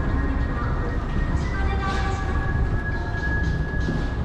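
Mitsubishi pallet-type inclined moving walkway (autoslope) running: a steady low rumble from its drive and moving pallets, with shop background music over it.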